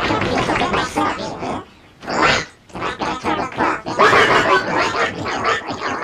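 Heavily distorted cartoon soundtrack: a warbling, pitch-shifted voice-like muttering that carries on throughout, breaking off briefly twice around the two-second mark.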